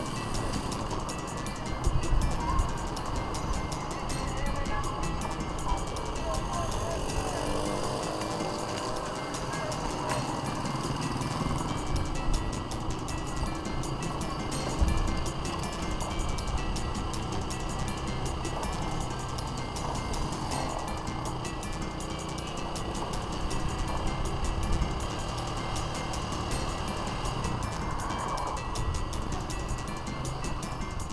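Busy street sound with vehicle and road noise, music and indistinct voices mixed in, and a few short heavy jolts about 2, 12 and 15 seconds in.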